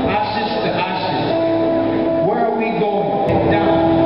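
A man's voice reciting a poem over music, with a long steady note held through the middle.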